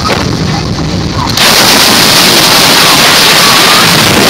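Wind blasting across the microphone of a camera held out in a moving open car. A lower rumble turns into a loud, steady rush about a second and a half in.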